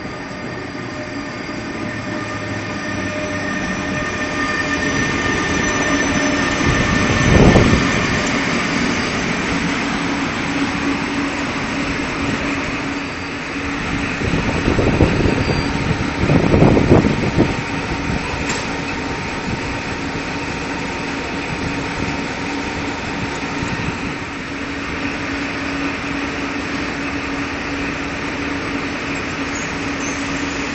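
Train pulling into a station behind the asynchronous-motor electric locomotive EU07A-001 and rolling slowly past: a steady running noise with a held hum. Louder rumbles of wheels and bogies come about seven seconds in and again around fifteen to seventeen seconds in.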